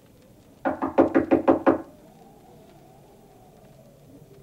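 A rapid burst of about eight hard knocks on a door, lasting just over a second, as someone pounds to be let in.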